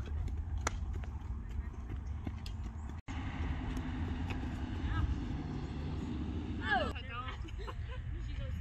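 Softball bat cracking against balls a few times as grounders are hit, over a steady low rumble of wind on the microphone, with a brief call or shout near the end.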